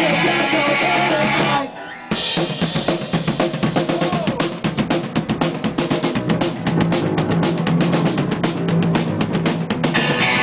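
Live punk rock band playing loud. About a second and a half in, the music cuts out for half a second. The drum kit then comes back in with a fast, hard-hit beat that carries the rest of the passage.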